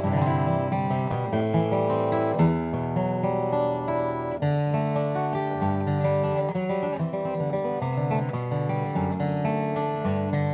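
Solo acoustic guitar, a Boucher dreadnought with a torrefied Adirondack spruce top and bubinga back and sides, played with picked chords whose notes ring on over changing bass notes.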